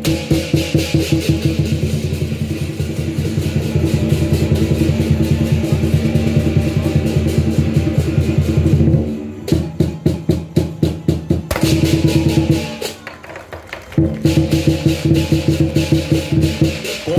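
Lion dance percussion: drum, cymbals and gong played in a fast, driving beat with a steady ringing tone under it. About nine seconds in the beat breaks into a few separate strokes and a brief quieter lull, then the fast beat resumes near the end.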